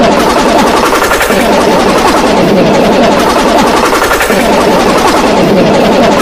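A cartoon voice sample chopped into a rapid-fire stutter and layered into a loud, distorted buzz, swelling in a repeating sweep about every second and a half.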